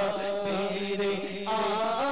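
A man singing a naat, an Urdu devotional poem, in a slow chant-like melody, holding and bending long notes over a steady drone. The voice eases off briefly and comes back in on a higher line about one and a half seconds in.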